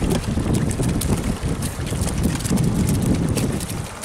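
Wind buffeting the microphone: a loud, uneven low rumble, with scattered sharp clicks and taps over it.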